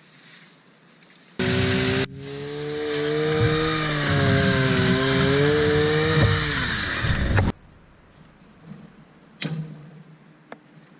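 Chainsaw running hard while cutting bamboo, its pitch sagging and recovering as the chain bites. It starts suddenly, drops out for a moment, then builds, and cuts off sharply about seven and a half seconds in.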